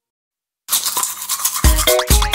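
Silence, then about two-thirds of a second in a cartoon toothbrush-scrubbing sound effect starts. Near the end a children's song comes in over it with a steady bass beat and bright pitched notes.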